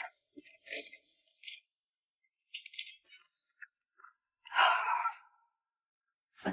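Close-miked mouth sounds of chewing slippery, oil-dressed rice noodles: scattered short wet clicks and smacks, then one longer, louder burst of mouth noise about four and a half seconds in.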